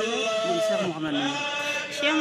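A man's voice chanting unaccompanied in long, wavering held notes that slide between pitches, dipping to a lower note partway through.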